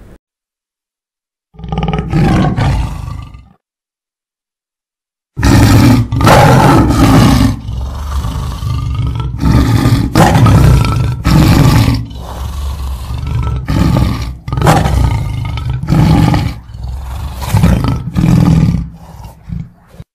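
Tiger roaring: one short roar about two seconds in, then, after a pause, a long series of loud roars and growls, one after another, from about five seconds in.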